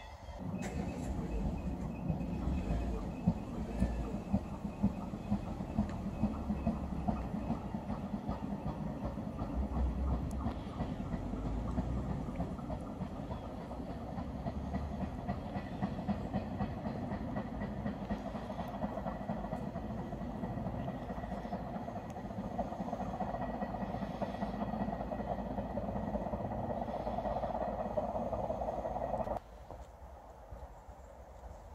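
Electric passenger train running along the line: a steady rumble of wheels on rails with irregular clicks over the rail joints. The sound cuts off suddenly near the end.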